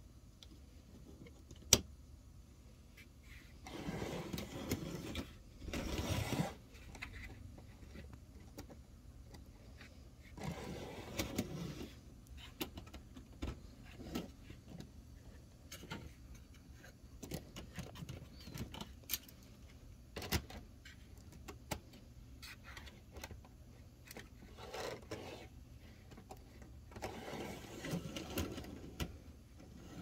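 Handling noises: scattered clicks and knocks, with a sharp click about two seconds in, and several stretches of rustling and scraping, over a faint steady low hum.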